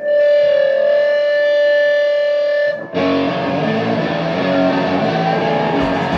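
Distorted electric guitar through a stage amp holds one sustained note for nearly three seconds. It then breaks into a loud, distorted rock riff about three seconds in, with drum hits starting near the end.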